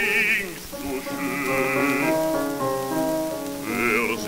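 Baritone singing held notes with vibrato over piano accompaniment, on a c. 1928 electrical disc recording with steady surface hiss.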